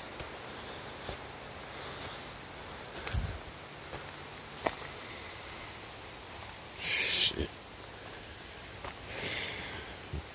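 Footsteps on a rocky dirt trail, with a climbing hiker's hard breathing: a loud, sharp breath about seven seconds in and a softer one near the end.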